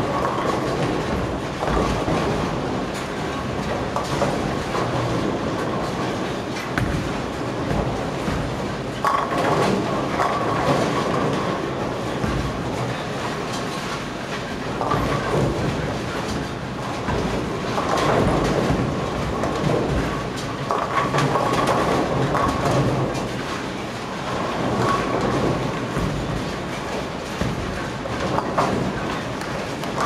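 Bowling alley din from many lanes: balls rolling on the lanes in a continuous rumble, and pins crashing in louder swells of clatter every few seconds.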